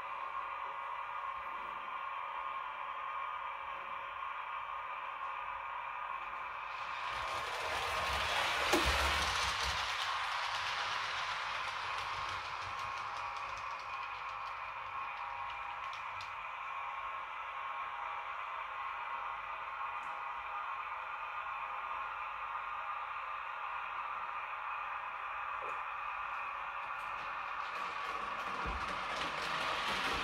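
H0-scale model freight wagons rolling down a model hump yard's tracks, a rushing clatter that swells from about seven to twelve seconds in, with a knock near nine seconds, and again near the end. A steady hum of several tones runs underneath.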